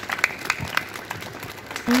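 A crowd of schoolchildren applauding, with scattered, uneven hand claps.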